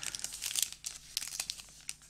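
Clear cellophane sleeve around a synthetic watercolour brush crinkling as it is handled, with irregular crackles throughout.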